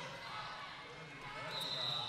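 Low arena background of skate wheels on the sport-court floor and distant voices. About one and a half seconds in, a referee's whistle starts as a steady high tone, signalling the end of the jam as it is called off.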